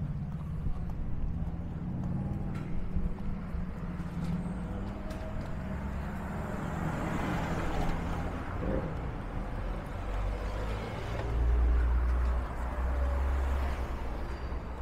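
City street traffic noise. A vehicle passes about halfway through, and a deep low rumble, the loudest sound here, comes in near the end.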